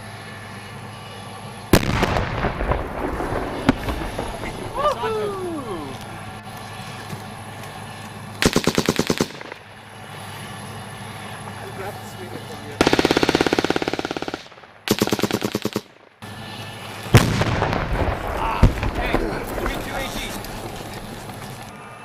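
Small-arms gunfire in a firefight. Several heavy single reports echo with a rumbling tail. Rapid bursts of automatic fire come in between, the longest near two seconds.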